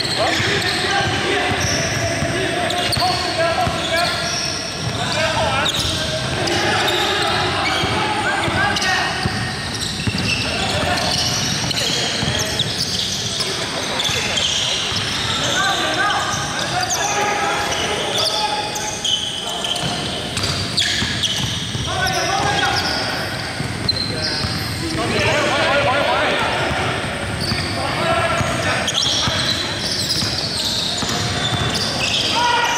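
Basketball dribbled on a hardwood gym floor during live play, with sneakers squeaking and players calling out to one another, all echoing in a large hall.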